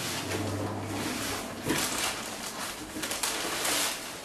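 Crumpled kraft packing paper rustling and crinkling irregularly as it is handled inside a cardboard shipping box.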